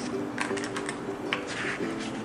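Paper pages of a wirebound planner being turned and smoothed by hand, giving a few short crisp rustles and clicks, over soft background music.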